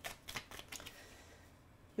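A deck of tarot cards being shuffled by hand: a quick run of soft card clicks in the first second, fading out.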